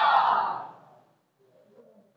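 A man's long, audible breath into a close microphone, fading out within the first second.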